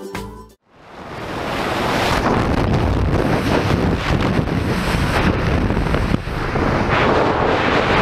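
Backing music stops abruptly about half a second in. Loud rushing wind on the camera's microphone follows, building over a second or so and then holding steady, as the tandem parachute opens.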